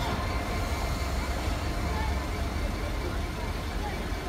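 EWS Class 66 diesel locomotive with a railhead treatment (Sandite) train pulling away over the level crossing: a steady low rumble of the diesel engine and wheels on rail.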